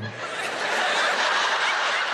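Studio audience laughing together at a punchline, a dense wash of laughter that swells just after the start and holds steady.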